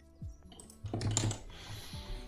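Computer keyboard keystrokes: a short burst of quick key presses starting about half a second in, used to move around the code editor.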